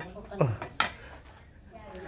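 A meat cleaver strikes a wooden chopping board once, a single sharp knock just under a second in. A brief voice sound comes just before it.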